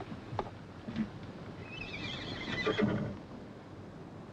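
A horse whinnying once, about two seconds in, after a few sharp knocks.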